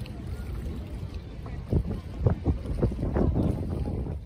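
Wind rumbling on the microphone over open lake water, with water lapping. From about halfway in come a run of uneven splashing slaps, the loudest part.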